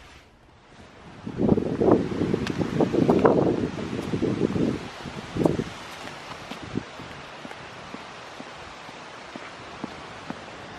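Wind buffeting and rustling on a handheld camera's microphone while walking outdoors, loudest for the first few seconds. It then settles to a steady outdoor hiss with a few soft footfalls on the sidewalk.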